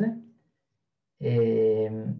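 A man's voice ends a phrase, then after a gap of just under a second of silence holds a drawn-out, steady-pitched 'ehh' hesitation sound for about a second.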